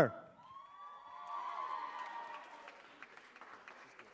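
Faint audience applause with a drawn-out cheer about a second in, as a contestant is welcomed on stage.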